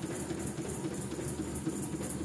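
Live acoustic ensemble music: steady held low drone tones under light, quick rattling percussion.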